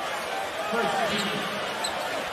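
Basketball arena ambience: a steady crowd murmur with the ball being dribbled on the hardwood court and faint voices in the background.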